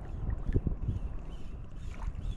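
Wind buffeting the microphone over open shallow water: an uneven low rumble, with a couple of brief knocks about half a second in.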